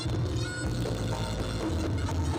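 Live reog Ponorogo accompaniment music playing steadily, with a pulsing low drum beat under held melodic tones.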